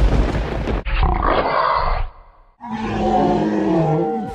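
Tiger roar sound effect from an animated intro: two noisy rushes, a short gap, then a long pitched roar that drops in pitch as it ends.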